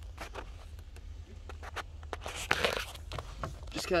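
Rustling and scraping of clothing and the camera brushing against cloth car-seat upholstery while reaching into a junked car's back seat, with a few small clicks and a louder scrape a little past halfway.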